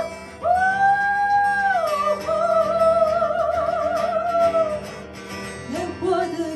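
A woman singing long, high held notes with an acoustic guitar accompanying her. A steady note steps down about two seconds in to a note sung with wide vibrato, which fades near the end before a lower phrase begins.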